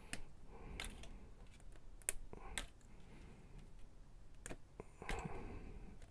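Small clicks and snaps from an action figure's shield and sword-bit parts being pulled out and handled: about half a dozen sharp, irregularly spaced clicks with light rustling between them.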